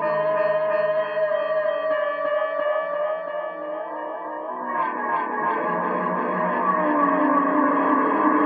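Instrumental music led by an electric guitar played through echo effects: sustained, gliding notes over an ambient backing. A new phrase comes in about five seconds in.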